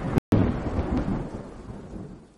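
Rolling thunder rumble. It breaks off for a split second just after the start, then resumes and fades steadily away.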